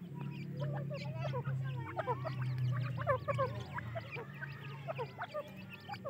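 Grey francolin chicks peeping continually with many short, high calls, over a steady low hum that is strongest in the first half.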